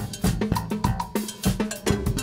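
Live band music: a drum kit and a cowbell struck with sticks in a steady dance beat, with sustained synthesizer tones underneath.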